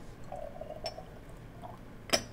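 Clear solutions being poured from glass beakers into a glass Erlenmeyer flask: a faint pouring sound, with a small glass click just under a second in.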